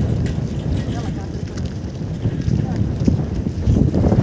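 Wind buffeting the phone's microphone in gusts, a heavy low rumble that rises and falls.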